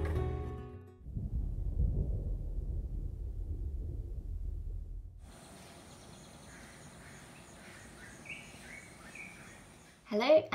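A low rumble as a boat moves over the sea, with the tail of a guitar song fading out at the start. About five seconds in it gives way to quieter outdoor ambience: a thin steady high tone and several short bird chirps near the end.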